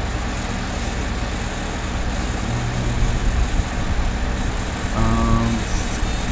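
Steady background hum and hiss, with a short voiced sound about five seconds in.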